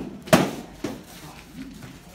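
Practice swords striking shields in sparring: one sharp, loud hit about a third of a second in, then a lighter one just under a second in.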